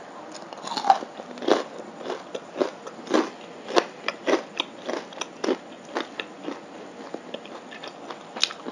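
Close-miked crunchy chewing: a mouthful of food crackling and crunching between the teeth in short, uneven bites, roughly two a second.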